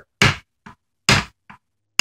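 Jeweler's hammer tapping on a steel hex key seated in an RC tank's drive wheel: three sharp metallic taps about a second apart, with fainter clicks between them. Each tap drives the drive wheel a little further off the gearbox shaft.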